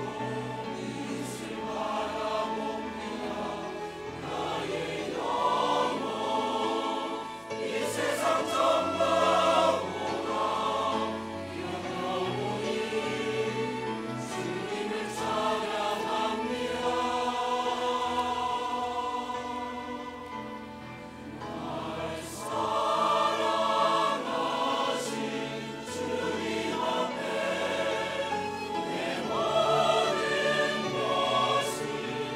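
Large mixed church choir singing a hymn in Korean, accompanied by a small ensemble of violins, cello, clarinet and piano. The singing swells louder a few seconds in and again in the second half after a brief softer passage.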